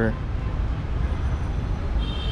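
Steady low rumble of outdoor background noise, heaviest in the deep bass, with no clear event in it.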